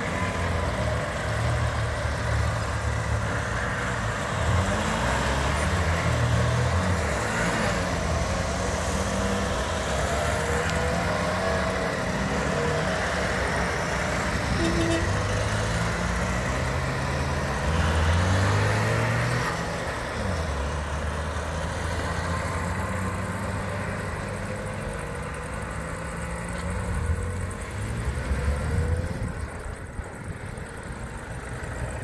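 A convoy of Trabant cars driving past one after another, their small engines running and shifting in pitch as each car goes by, with a few louder passes.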